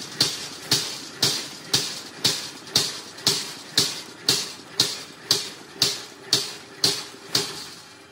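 Mechanical flywheel punch press punching round holes in a steel plate, one sharp metallic clank about every half second with a short ring after each. The strokes stop shortly before the end.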